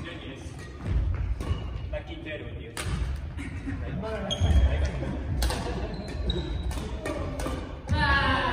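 Badminton rackets hitting shuttlecocks in a drill: a series of sharp hits, roughly one a second. Heavier thuds of feet landing on the wooden gym floor come through too, loudest about a second in and around three and four and a half seconds in.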